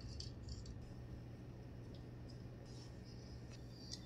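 Quiet handling: a few faint light ticks and rustles of thin jewellery wire and a dried rose petal being handled, over a low steady hum.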